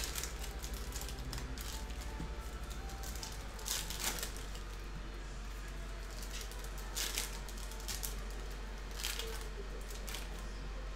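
Foil trading-card pack wrappers crinkling and tearing as they are opened and handled, in several short bursts.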